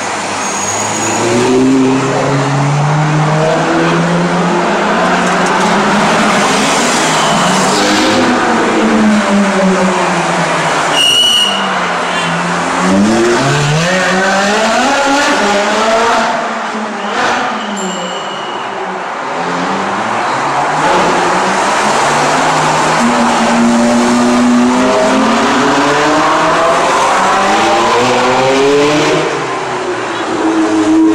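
Ferrari sports cars driving past one after another, their engines revving with pitch rising and falling as each goes by. Two short high-pitched squeals cut in, about eleven seconds in and again some seven seconds later.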